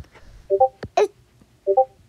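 Two short electronic blips, each a quick cluster of a few tones, about a second apart, with a single brief spoken word between them.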